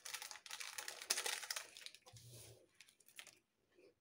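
Paper baking-powder sachet crinkling as it is shaken out and crumpled: a fast run of faint small crackles over the first two seconds or so that dies away.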